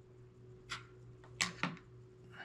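A few short soft scrapes and taps of a knife cutting a thin strip of clay on a wooden cutting board and being set down, one under a second in and two close together about a second and a half in, over a faint steady hum.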